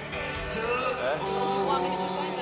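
Live pop band music with a male singer, played over the concert PA and heard from among the audience.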